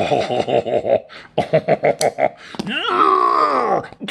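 A man laughing hard in quick bursts, then a long drawn-out wordless vocal sound with a wavering pitch near the end.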